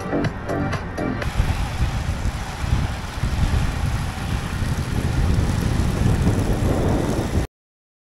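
Electronic dance music with a steady beat for about the first second, then wind buffeting the microphone of an action camera riding low on a moving road bike, a loud fluctuating rush with road noise, which cuts off suddenly about seven and a half seconds in.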